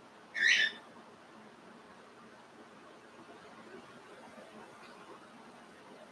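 One short hiss about half a second in, then faint room tone.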